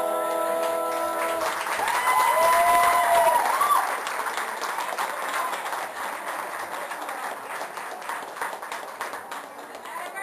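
The last chord of the song's backing music is held and cuts off about a second and a half in. An audience then claps, with a few shouted cheers early in the applause, and the clapping thins out toward the end.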